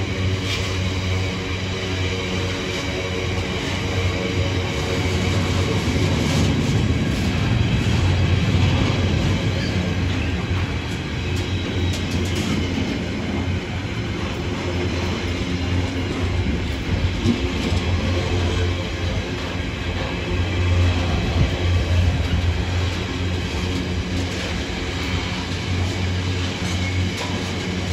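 Container wagons of a freight train rolling past: a steady rumble of steel wheels on rail with a low hum and occasional clicks over the rail joints.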